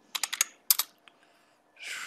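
Computer keyboard keystrokes: a quick run of key clicks, then one sharper key press a little later, then a pause.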